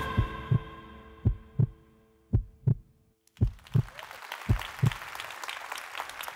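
Heartbeat sound effect ending an intro theme: five pairs of low lub-dub thumps about a second apart, over sustained music tones that fade out by about halfway. From about halfway a hiss of audience applause comes up under the last beats.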